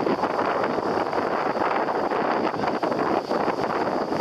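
Wind buffeting the microphone: a steady, rough rush of noise with uneven gusty flutter.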